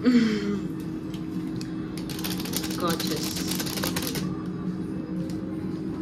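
A short voice sound, then a dense crackling, rustling noise of quick clicks lasting about two seconds, over a steady low hum.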